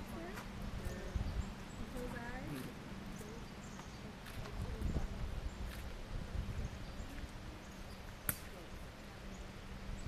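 Faint distant voices talking over a low rumble and a steady low hum, with one sharp click about eight seconds in.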